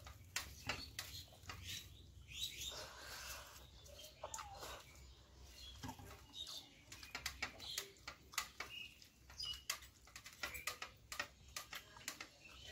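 Close-miked eating by hand: fingers working rice and curry on a steel plate, with chewing and many quick wet mouth clicks throughout.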